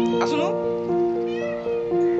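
Domestic cat meowing twice: a loud call with a bending pitch just after the start, then a fainter, arching one about a second and a half in, over background music with held notes.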